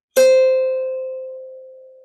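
Ukulele sounded once, with a single pitched note ringing clearly and fading away slowly over the next two seconds.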